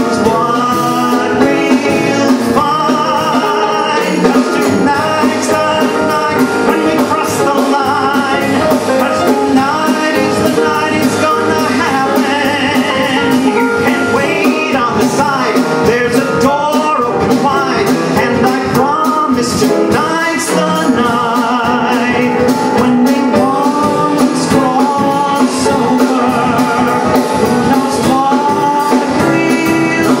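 Male singer performing an upbeat musical-theatre song with a live band, a drummer keeping the beat behind him.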